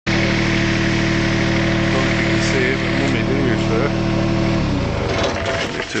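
A steady engine hum that cuts off about four and a half seconds in, with a voice talking over it.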